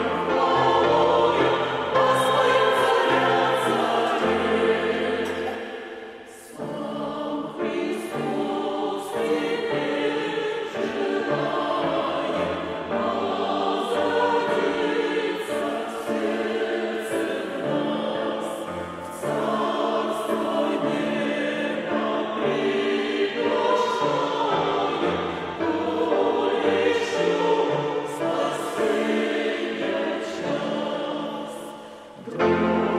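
Mixed church choir singing a Christmas hymn in Russian, with a brief break between phrases about six seconds in.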